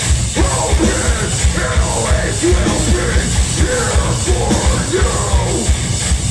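Live hardcore band playing loud and heavy: rapid kick-drum hits under distorted guitars, with the vocalist yelling over them.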